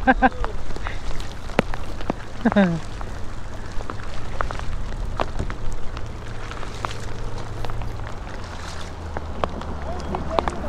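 Heavy rain falling on open lake water and a plastic kayak: a steady hiss with many scattered sharp clicks of drops striking close by, over a low rumble.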